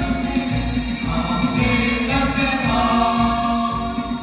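A mixed group of boys and girls singing a song together into microphones over a musical accompaniment, holding long sustained notes from about a second in.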